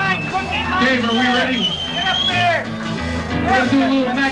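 A live band of drums, bass and guitar playing, with a man's voice and some crowd chatter over the music.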